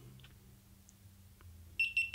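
GoPro Hero3 camera beeping as it powers on: a quick run of short, high beeps near the end.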